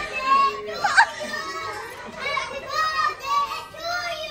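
Toddlers playing: high-pitched young children's voices calling and babbling in short bursts, with a brief loud peak about a second in.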